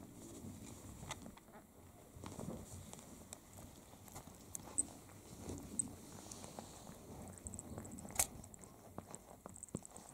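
A snow Bengal mother cat licking her newborn kittens: faint wet licking and rustling of the bedding, with scattered small clicks and one sharper click about eight seconds in.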